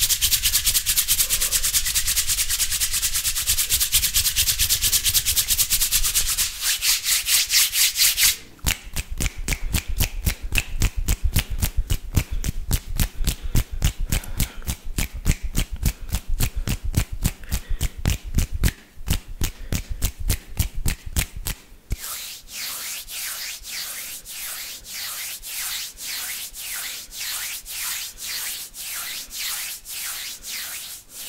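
Palms rubbing together close to a microphone, a fast swishing rasp. After about eight seconds it breaks into a quick run of separate strokes, and in the last third it slows to about two strokes a second.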